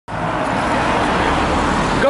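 Steady road traffic noise on a city street: an even roar of passing cars with a low rumble, starting suddenly at the very beginning.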